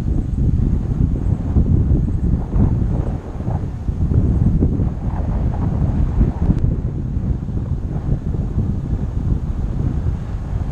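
Wind buffeting the microphone of a camera on a moving bicycle: a heavy low rumble that rises and falls with the gusts.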